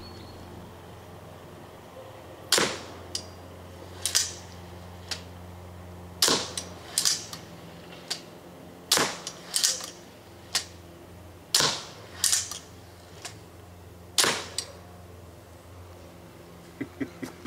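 Jörg Sprave's Fenris bow, set to full power, shooting arrows in quick succession: a series of sharp snaps, the loudest about every two and a half seconds, with smaller clacks in between.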